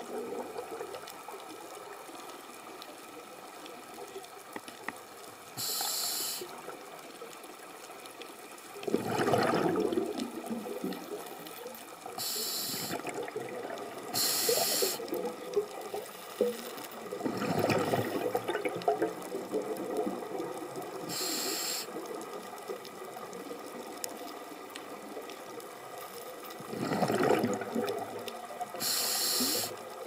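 Scuba regulator breathing underwater: a short hiss of inhaled air every several seconds, and three longer rushes of exhaled bubbles, over a steady faint hiss.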